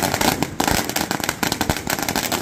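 A string of firecrackers going off on the road in a rapid, continuous run of loud bangs.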